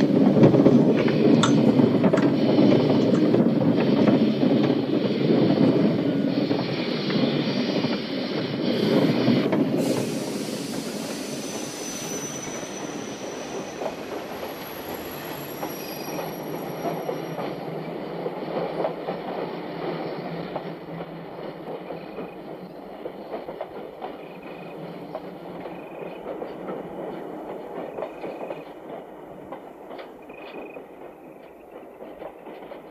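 A steam-hauled passenger train pulling out of a station, its carriages rumbling and clattering on the rails. The sound is loudest at first and fades steadily from about ten seconds in as the train draws away.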